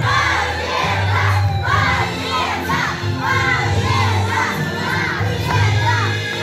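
A crowd of children shouting and cheering in celebration over loud dance music with a steady bass line.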